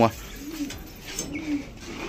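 Domestic pigeons cooing: two soft, low coos about a second apart.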